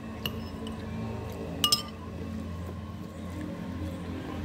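Short, sharp clinks of fingers and a metal bracelet against a ceramic plate while rice is gathered by hand: one light tap early on and a louder, ringing double clink about a second and a half in.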